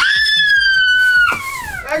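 A girl's long, high-pitched squeal, held for about a second and a half, then sliding down in pitch as it fades.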